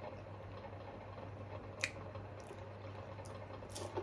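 Faint sipping of an iced drink through a plastic straw, with one short click a little under two seconds in, over a low steady hum.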